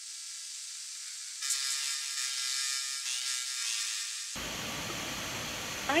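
Hiss of a Skype phone line, with a faint murmur of steady tones from about a second and a half in to about four seconds, and a fuller rushing noise after that.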